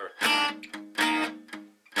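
Cutaway acoustic guitar strummed twice, about a second apart, each chord dying away quickly.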